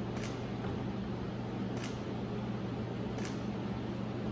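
Camera shutter clicking three times at a steady pace, about one and a half seconds apart, over a steady low room hum.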